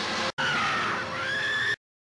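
Film sound effect of the glowing box opening: a loud, sustained high wail over a rushing noise, dipping and then rising in pitch, broken by a brief dropout about a third of a second in and cutting off suddenly near the end.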